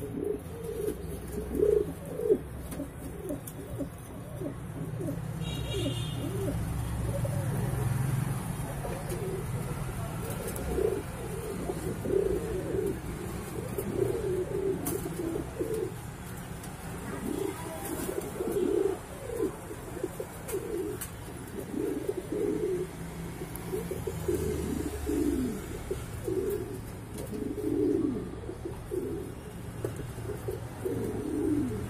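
Reverse Wing Pouter pigeons cooing over and over, a run of short low coos rising and falling in pitch, over a steady low rumble.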